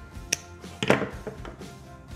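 A sharp snip as wire strippers cut through a fuse holder's red wire loop, followed just under a second in by a louder knock as the metal tool is set down on the tabletop. Soft background music runs underneath.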